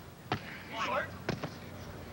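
Two sharp smacks of hands striking a beach volleyball, about a second apart: the serve, then the receiving pass.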